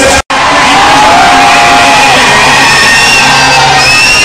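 Loud live Punjabi concert music recorded from the crowd, with long held notes that slide up and down in pitch over a dense wash of sound and crowd noise. The audio drops out for a split second just after the start.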